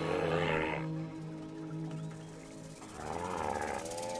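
Soundtrack music holding low sustained notes, with two harsh, wavering bird calls over it, one at the start and one about three seconds in.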